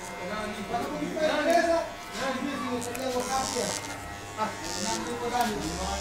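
Corded electric hair clippers buzzing steadily as they are run through short hair.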